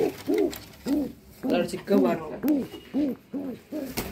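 Domestic pigeons cooing: a run of short, low coos, each rising then falling in pitch, with a pause about a second in before they come faster, about three a second.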